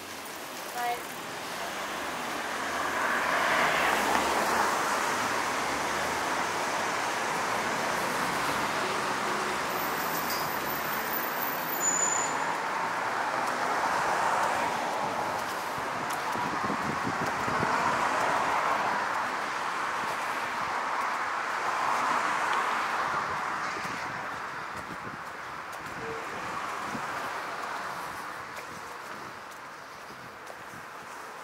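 City road traffic: cars passing one after another, each swelling up as a rush of tyre and engine noise and fading away, four or five times.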